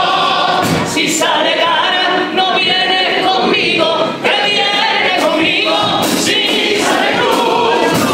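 Male Cádiz-carnival comparsa chorus singing a cuplé in several-part harmony, with guitar and drum accompaniment and a few sharp drum or cymbal hits about a second in and again near the end.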